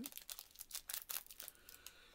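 Plastic wrapper of a Japanese green tea Kit Kat crinkling and crackling as it is worked open by hand, a quick run of crackles that thins out after about a second and a half.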